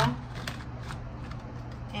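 A deck of cards being shuffled by hand: soft, light flicks of card against card, over a low steady hum.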